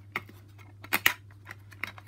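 Plastic clicks and snaps as a DVD is pressed off the centre hub of its plastic case, about five sharp clicks, the loudest a little after one second in.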